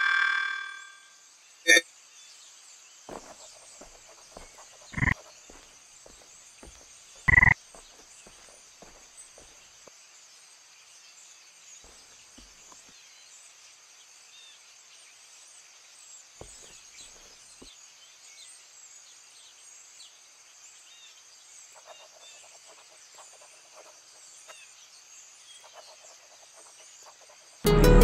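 Quiet outdoor ambience with a steady high-pitched insect drone, broken by a sharp click about two seconds in and two louder thumps around five and seven seconds. A ringing tone fades out at the very start, and music begins right at the end.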